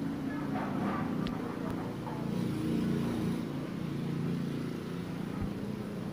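A low, steady engine hum.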